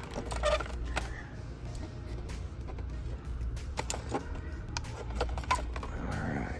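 Faint background music over a steady low hum, with scattered clicks and rustles of plastic blister-card toy packaging being handled on pegboard hooks.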